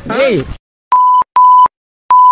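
Two short, identical steady electronic bleeps of about a third of a second each, dubbed over the audio with dead silence around them. This is a censor bleep covering the speech.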